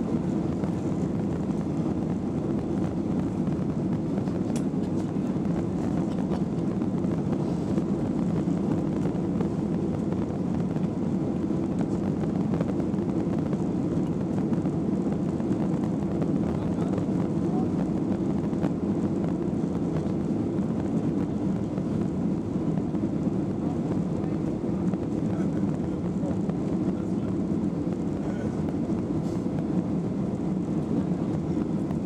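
Cabin noise of a Boeing 737-800 in its climb after takeoff: the steady, low drone of its CFM56 engines and the airflow, heard from inside the cabin.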